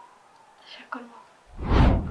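A loud breathy rush of air, a person exhaling or sighing close to the microphone, in the last half-second before a woman starts speaking. Before it there are only faint small sounds of movement and breath.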